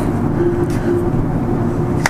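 Steady low rumbling hum inside a lift car, with a faint wavering tone above it; a sharp click right at the end.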